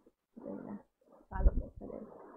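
A woman's short non-word vocal sounds close to the microphone. There is a brief burst about half a second in, then a louder, harsher one with a low thump about a second and a half in.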